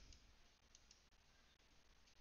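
Near silence: faint room tone with a few soft clicks, one just after the start and two close together a little under a second in.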